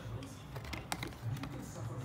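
Stiff printed card pages being handled and flipped, with a few sharp clicks and taps of the card near the middle.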